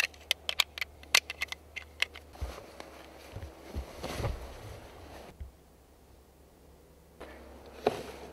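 A quick run of small sharp clicks of gear being handled, then rustling and scraping as a rucksack is lifted from a car boot and shouldered. A quieter lull follows, with another click near the end.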